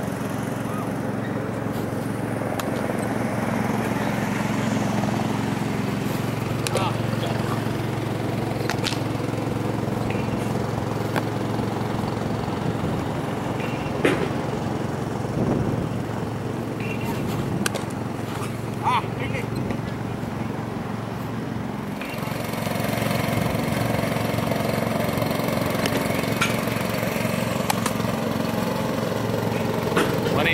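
Steady drone of a small engine running, with a few sharp knocks in the middle.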